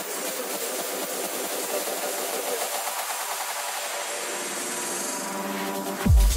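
Electronic dance music in a DJ mix during a build-up: the bass and kick are cut out, leaving a dense, hissing noise wash over the track's upper parts. The full low end and kick drum crash back in right at the end.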